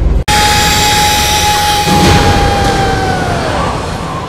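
An edited-in sound effect: a loud rushing noise with a steady whine running through it. It starts abruptly after a brief dropout and its whine slides down in pitch shortly before the end.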